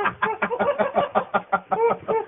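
A person laughing hard, a quick run of ha-ha pulses about five a second.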